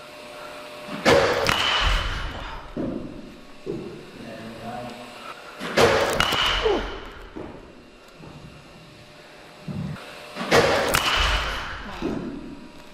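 A 31-inch DeMarini The Goods BBCOR bat hitting baseballs three times, about five seconds apart. Each contact is a sharp crack with a brief high ringing tone.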